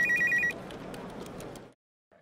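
Electronic two-tone trill like a telephone ringer, flicking rapidly between two high pitches for about half a second as a title-card sound effect. It is followed by a faint hiss that fades to silence.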